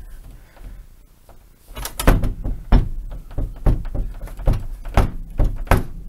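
A door being pushed and pulled but not opening, knocking against its frame in a run of sharp thuds, about ten of them in four seconds, starting about two seconds in.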